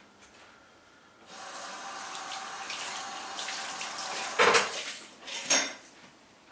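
Kitchen tap running into the sink for about four seconds, starting about a second in, with two sharp knocks from things handled at the sink near the end, the loudest sounds here.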